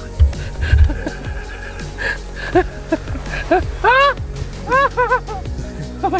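Background music: a melody of rising-and-falling notes over sustained low tones.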